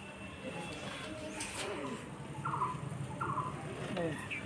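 Two short bird calls, a little under a second apart, about two and a half seconds in, over a faint low background hum.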